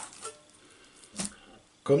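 A single short thud about a second in, a lump of minced meat dropped into a plastic food-processor bowl; the rest is faint room tone.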